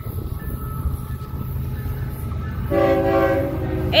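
Florida East Coast Railway GE ES44C4 diesel locomotive approaching with a steady low rumble. Near the end it sounds one short chord on its air horn, the loudest sound here.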